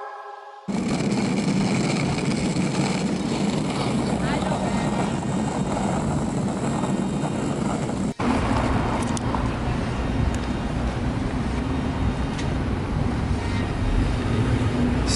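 Outdoor street ambience: a steady, loud rush of noise with traffic and faint voices. It starts abruptly just under a second in and drops out briefly about eight seconds in.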